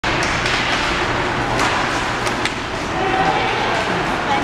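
Ice hockey play in a rink: a few sharp clacks of sticks and puck, near the start and again around one and a half to two and a half seconds in, over skate blades on ice and spectators' voices echoing in the arena.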